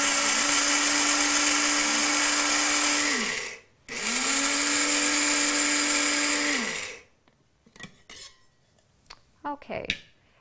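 Electric blade coffee grinder grinding flaxseed in two runs: a steady motor whine winds down about three seconds in, starts again almost at once with a rising pitch, and winds down again after about three more seconds. A few light knocks follow.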